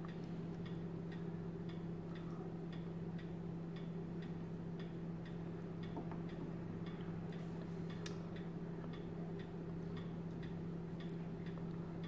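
Steady low hum with faint, even ticking about two times a second over it, and one brief high-pitched blip about eight seconds in.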